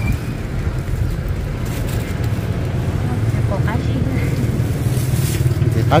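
A steady low rumble, with brief faint voices about three and a half seconds in.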